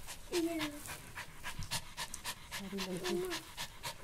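A pet dog panting rapidly and hard, about five breaths a second, the sign of a dog worn out from excited play. Two short pitched sounds, one near the start and one around three seconds in, stand out over the panting.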